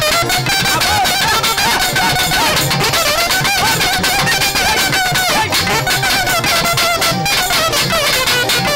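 A nadaswaram playing a wavering, heavily ornamented melody over a fast, dense drum beat in live folk dance music.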